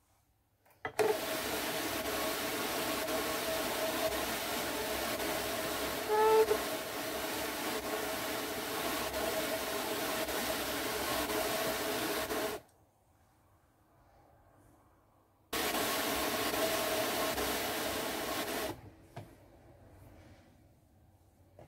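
Drum carder turning, its wire-toothed drums brushing through fibre with a steady scratchy whir. It runs from about a second in until about twelve and a half seconds, stops, then runs again for about three seconds near the end.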